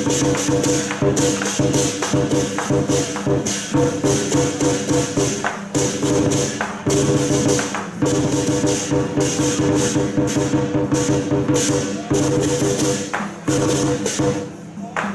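Southern lion dance percussion played continuously: dense, rapid strikes with cymbals clashing over sustained ringing tones.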